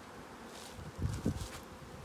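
Honeybees buzzing around a hive, a steady faint hum, with a couple of short low bumps about a second in.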